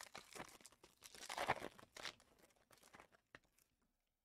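Plastic wrapping on a sealed box of trading cards being torn open and crinkled by hand: irregular crackling, loudest about a second and a half in, dying away shortly before the end.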